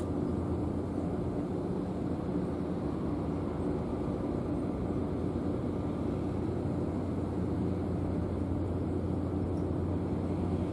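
A steady low mechanical drone with a faint hum and rumble, unchanging throughout.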